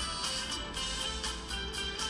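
Background music with a steady beat, about two strokes a second.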